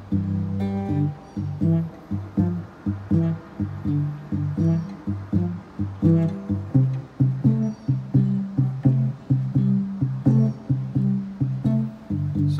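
Three-string cigar box guitar playing a straight one-four-five blues rhythm: a steady run of low picked notes in an even pulse.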